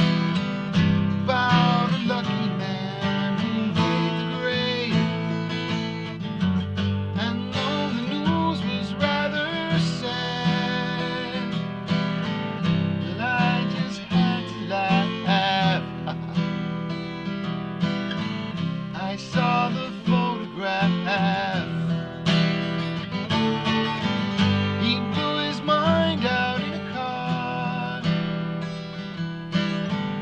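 Acoustic guitar played steadily as an instrumental passage, strummed and picked, with no singing.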